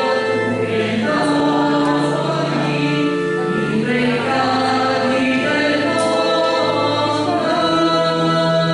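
A hymn sung by a group of voices in slow, held notes, each lasting a second or two before moving to the next.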